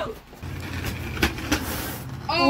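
Hard plastic wheels of a child's ride-on toy car rolling over concrete, a steady low rumble that starts about half a second in, with two sharp knocks.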